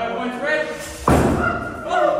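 Voices in a large hall, broken about a second in by a single sharp thump, the loudest sound here, that rings on briefly in the room.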